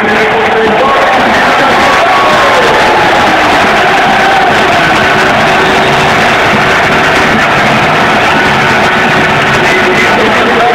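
Loud rock music over the arena's sound system, with crowd noise from the stands underneath.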